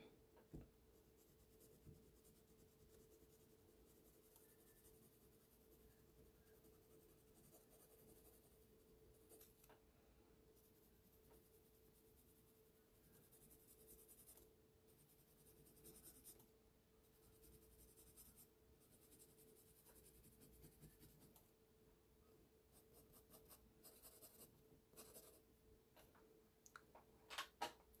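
Faint scratching of an HB graphite pencil on paper in short, light strokes, laying in feathered shading, over a steady faint hum.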